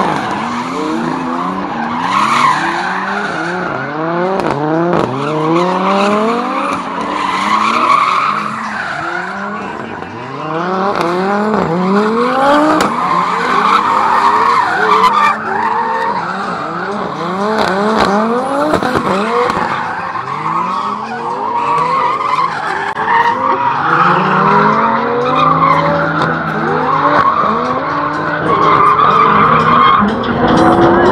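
Several drift cars sliding sideways with their engines revving hard, the pitch climbing over and over as the drivers work the throttle. Tyres squeal throughout as the cars slide, and for a few seconds near the end one engine holds a steadier note.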